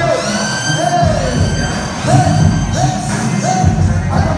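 Live music played through a PA, with a male vocalist giving short repeated calls into a microphone over a backing beat. It echoes in a large hall.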